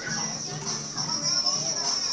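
Many children's voices chattering and calling out over each other, with dance music playing underneath.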